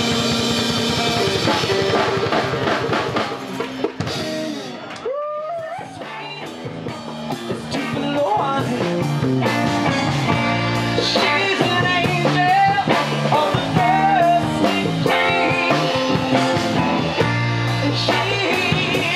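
Live rock band playing: electric guitars, bass guitar and drum kit with a cajon, and singing. The music dips to a brief break about five seconds in, then the band plays on.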